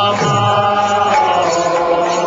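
Devotional kirtan chanting, sung as a melody with long held notes over instrumental accompaniment.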